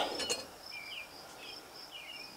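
Insects chirping outdoors: a faint, steady, high pulsing trill with short chirps over it. A couple of brief clicks from metal parts being handled come just after the start.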